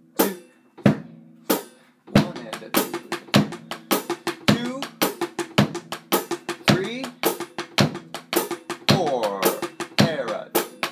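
Drum kit played slowly with sticks: a few spaced strokes open, then from about two seconds in a steady, even run of paradiddle-diddle sticking (RLRRLL) on the snare, in quarter-note triplets over the bass drum.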